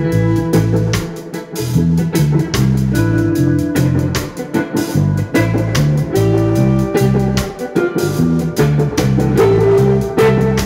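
Live rock band playing an instrumental passage: electric guitar lines over a repeating bass guitar figure and a steady drum-kit beat.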